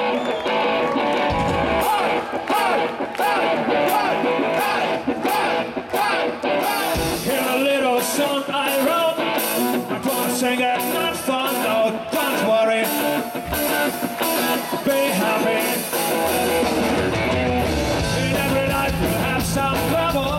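Live ska-rock band playing: electric guitars and drums with singing. The low end gets much heavier about three-quarters of the way through.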